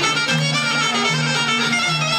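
Epirote Greek folk dance music: a reedy wind melody over a steady, repeating bass line that steps between two notes about every half second.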